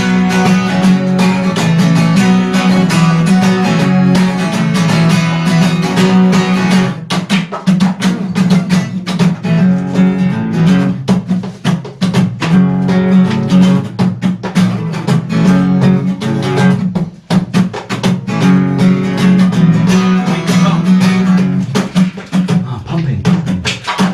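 Acoustic guitar strummed in a steady chord rhythm, with sharper, choppier strokes from about seven seconds in.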